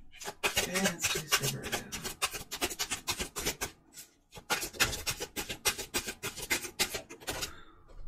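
A tarot deck being shuffled by hand: rapid flicking and slapping of cards, in two runs of about three and a half seconds each with a short break about four seconds in.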